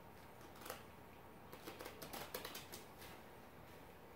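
A small deck of game cards being shuffled by hand: faint soft clicks and flicks, with a quick run of them from about a second and a half in to near three seconds.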